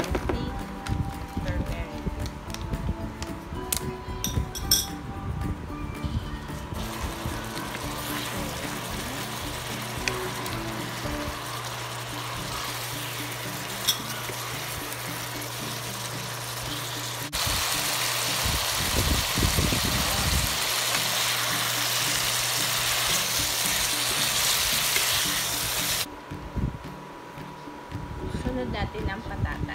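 Curry-coated chicken pieces frying in a nonstick wok, sizzling steadily while being stirred with a spatula. The sizzle grows louder partway through and cuts off suddenly near the end.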